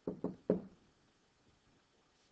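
A pen knocking against a writing board while a word is handwritten: three short knocks in the first half second.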